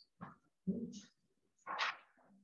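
A few soft, brief voice sounds close to the microphone, in three short bursts with hiss-like parts between silences.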